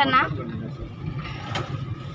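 Steady low rumble of a car's engine and tyres on the road, heard from inside the cabin while driving. A person's voice sounds briefly at the very start.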